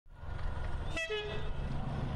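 Train running with a low rumble, and a short train whistle blast about a second in.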